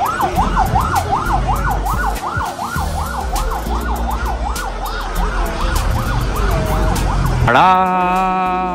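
A siren warbling rapidly up and down in pitch, about three times a second, over a low rumble. Near the end it stops and a voice calls out a long, drawn-out 'Ta-da'.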